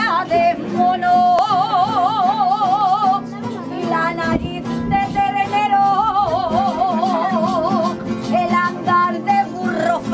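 A woman singing an Aragonese jota (jota de picadillo) in long held notes with a wide vibrato, over a rondalla of guitars and accordion.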